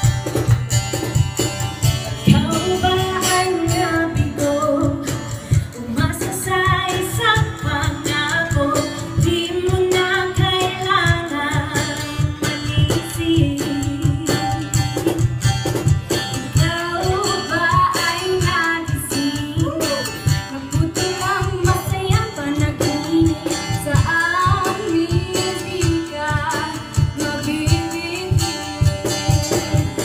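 Young women singing into microphones, taking turns on the melody over amplified music with a strong, steady bass beat.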